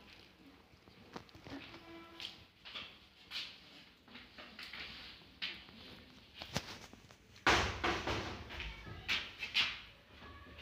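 Three-week-old husky puppies whining and squeaking in short high cries as they wrestle together, with a loud rustling bump about seven and a half seconds in.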